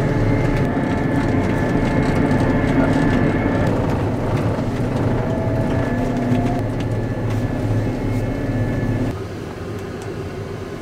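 Combine harvester's engine and drivetrain running steadily as heard inside the cab while travelling on the road: a loud drone with a deep rumble and steady whining tones. About nine seconds in the deep rumble drops away suddenly and the sound gets quieter.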